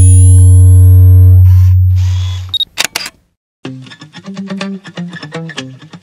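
A loud, deep bass drone that fades out after about two and a half seconds, then a few quick camera-shutter clicks. After a brief silence, plucked guitar music begins.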